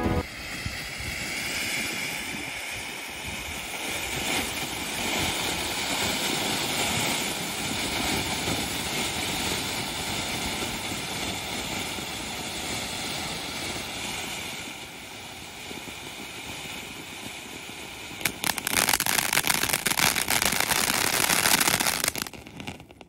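Ground firework fountain (Thanigai Cocktail 5-in-1 fountain) spraying sparks with a steady hiss. About 18 seconds in it switches to its crackling stage, a louder, dense run of sharp crackles.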